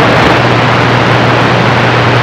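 Radio receiver's speaker giving a steady hiss of band static on an open channel, with a low steady hum underneath and no clear voice coming through.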